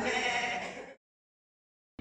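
A person's drawn-out vocal sound, cut off abruptly about a second in and followed by complete silence.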